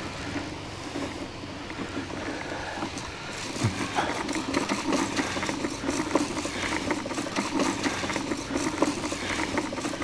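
Push-along broadcast fertilizer spreader rolling over grass, its wheel-driven gears and spinning plate making a steady whirring rattle while it flings out fertilizer granules. A fast ticking grows louder about four seconds in.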